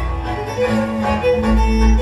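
Hungarian folk dance music from a string band: fiddle melody over bowed bass notes.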